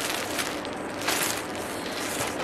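White plastic courier mailer bag rustling and crinkling as it is handled, in irregular crackles that peak a little after one second.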